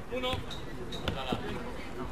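A football being kicked and bouncing on artificial turf: a few short dull thuds.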